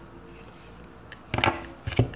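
Oracle cards being handled over a table: quiet at first, then a few short clicks and taps of card stock about a second and a half in and again at the very end.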